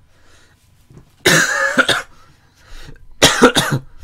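A person coughing: one cough about a second in, then a quick run of several coughs near the end.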